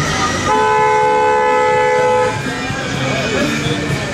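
A car horn sounding once, held steadily for nearly two seconds, its two notes sounding together.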